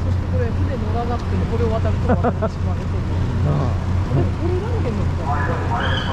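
Steady low drone of a small harbour ferry's engine, with people talking indistinctly over it.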